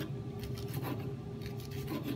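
Serrated kitchen knife sawing through tomato and tapping on a wooden cutting board in light, uneven strokes.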